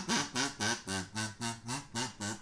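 Kazoo playing an unaccompanied break: a run of short buzzing notes, about three or four a second, each bending in pitch, with the guitar silent.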